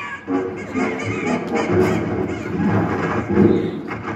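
Animated-film soundtrack played through a hall's loudspeakers: loud, busy music.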